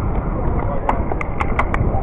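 Wind buffeting the microphone of a moving bicycle-mounted camera, with crowd noise from spectators along the barriers. A quick run of about five sharp clicks or claps comes about a second in.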